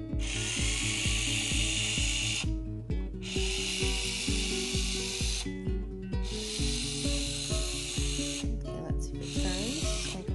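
Bee-Bot floor robot's drive motor whirring in spells of about two seconds with short pauses between, as it carries out its programmed steps one after another: three spells, then a fourth starting near the end. Background music with a steady beat plays under it.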